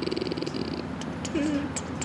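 A woman's low, creaky, closed-mouth "hmm" while thinking, lasting just under a second, followed by a few small mouth clicks and two brief murmurs.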